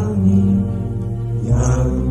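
A slow Indonesian song: held low notes underneath, with a chant-like voice whose pitch swoops upward about one and a half seconds in.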